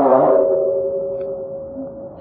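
The steady ringing tone of a Buddhist bowl bell, fading away over about two seconds, as a chanted line ends at the start.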